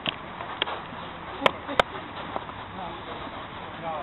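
A football being kicked during a five-a-side match: four short, sharp knocks, the two loudest close together about a second and a half in, over distant players' shouts.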